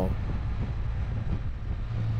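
Can-Am Spyder F3-S's three-cylinder engine running steadily while riding along, mixed with wind and road noise on the microphone.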